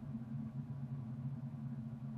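A steady low hum of background room tone, with no clicks or other events.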